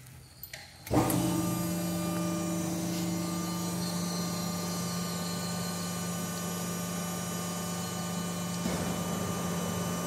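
Hydraulic guillotine shearing machine's pump motor switching on about a second in and then running with a steady low hum, the machine idling ready to cut.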